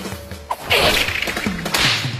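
Anime sound effect of a fishing rod being whipped and its line swishing through the air: a short click about half a second in, then a loud swish that carries on to the end.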